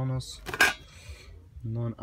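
Cutlery clinks once, sharply, against a hard surface about half a second in, between snatches of a man's voice.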